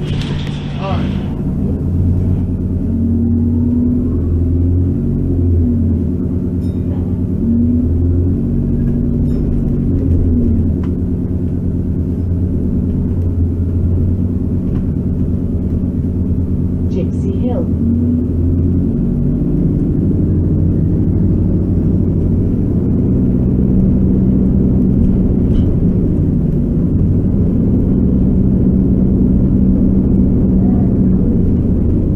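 London bus engine and drivetrain heard from inside the passenger saloon while the bus is under way. The engine note rises and falls several times in the first twenty seconds, then runs steadily.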